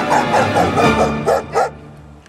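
A German shepherd-type dog barking: a rapid run of short barks in the first second, then two more single barks. Background music plays underneath and fades out near the end.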